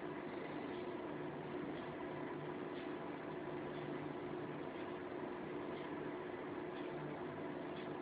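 Steady hiss with a faint low hum and no distinct events: the room tone and noise floor of the recording.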